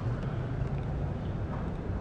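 Steady room noise of a large hall picked up by the lectern microphones: a low hum with an even hiss over it, and no speech.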